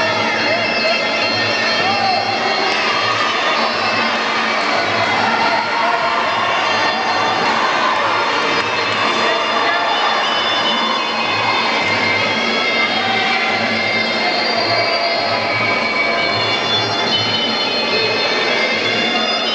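Traditional Muay Thai fight music: a reedy wind pipe plays a held, wavering melody over a steady, even low drum beat, with a crowd's voices underneath.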